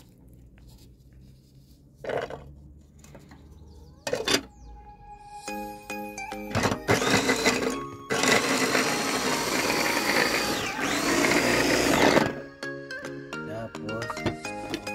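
Electric mini food chopper chopping garlic: a short burst, then a run of about four seconds, its pitch dipping and recovering near the end before it stops. Background music plays from about the middle onward.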